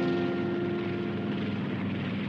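Propeller-plane engine drone, a cartoon sound effect for a small biplane, under the last held note of music. The note fades out partway through, and the drone slowly fades.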